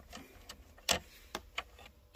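A handful of light clicks and taps, the sharpest about a second in, as a plastic card is slid into the gap between the centre console trim and the cup-holder roller blind.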